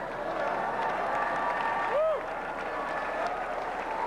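Large audience applauding, with a voice calling out briefly about two seconds in.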